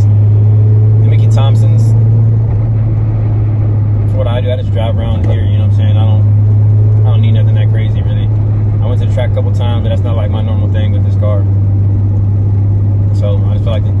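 Steady low drone of a car cruising, heard from inside the cabin, with no change in pitch.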